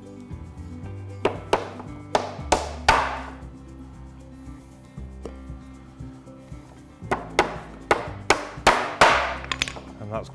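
A hammer driving nails into softwood timber, in two runs of about five and six quick blows, the first about a second in and the second about seven seconds in, over background music.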